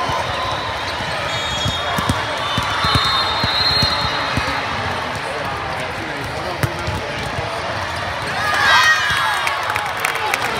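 Volleyball hall din: a steady background of crowd chatter with scattered sharp smacks of volleyballs being hit and bouncing. About nine seconds in, a short burst of shouts and cheers goes up as the point is won.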